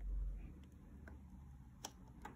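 Faint handling sounds: a low bump at the start, then a few small, sharp clicks, the sharpest just before the end, as the plastic cup is handled beside the bowl of gym chalk.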